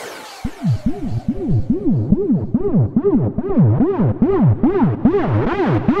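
Electronic dance music at a build-up: after a fading echo, a synth riff of quick swooping notes, about two to three a second, grows steadily brighter and fuller.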